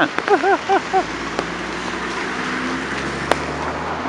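Cars driving through an intersection on wet pavement: a steady wash of tyre and engine noise, with a low engine hum that swells from about a second in. A single sharp click sounds near the end.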